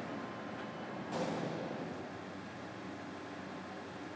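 Steady hum and hiss of dough-plant machinery, with a brief hissing rush of noise about a second in that slowly fades.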